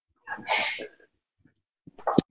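One short burst of a person's voice, about half a second long, heard through a video call and cut off to dead silence on either side.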